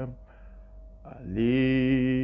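A man singing a slow worship chorus solo. A held note ends at the start, there is a short pause, and about a second and a quarter in he comes in again on a long, steady held note.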